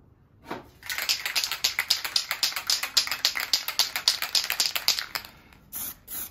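An aerosol spray can of flat black paint being shaken: its mixing ball rattles rapidly, about eight to ten clicks a second, for some four seconds. A brief hiss of spray follows near the end.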